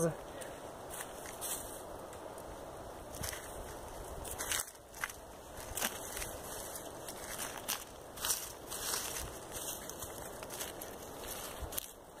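Hands pressing and firming loose clayey soil around a palm seedling: scattered soft crunches and crackles of crumbling earth over a steady faint background noise.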